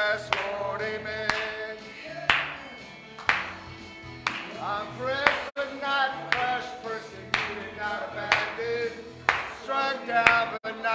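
Upbeat Christian worship song: singing over a band, with sharp hits about once a second marking the beat.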